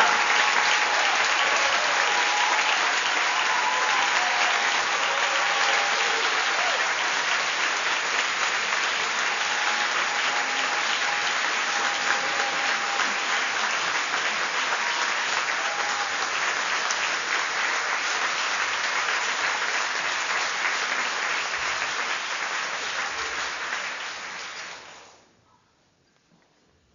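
Audience applauding steadily; the clapping fades and dies away shortly before the end.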